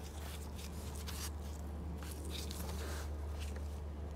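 Faint rustling and small clicks of a gloved hand handling a Honda sun visor and its plastic pivot clip at the headliner, over a steady low hum.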